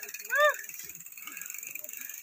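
A single short voiced call, rising then falling in pitch, about half a second in, over a faint steady high hiss.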